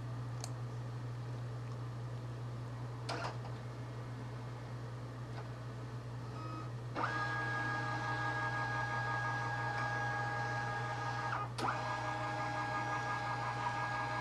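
Brother MFC-J870DW multifunction printer scanning a page. A few faint clicks sound over a steady low hum, then about seven seconds in the scan motor starts a steady whine. The whine stops briefly near the end and resumes.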